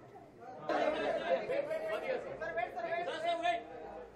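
People talking over one another, with a nearby voice talking loudly from under a second in until near the end.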